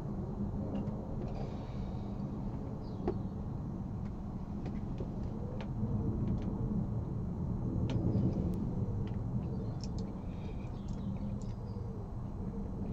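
Quiet room tone: a low steady hum with a few faint, short clicks scattered through it.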